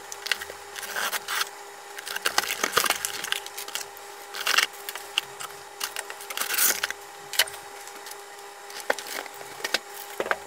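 Unboxing noises: plastic strapping being cut with a utility knife, then the cardboard box, paper-pulp packing and plastic parts bags being handled. The sound comes as irregular snaps, clicks and crackling rustles, over a faint steady hum.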